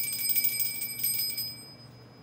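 A small puja hand bell rung rapidly during the abhishek, a fast run of clapper strikes over a steady high ring. About a second and a half in, the ringing stops and the bell's tone fades away.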